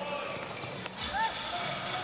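A basketball being dribbled on a hardwood court with short sneaker squeaks about a second in, over a steady arena crowd hubbub.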